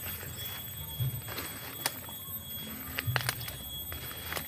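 Footsteps and brushing through leafy undergrowth, with a few short, sharp crackles scattered through.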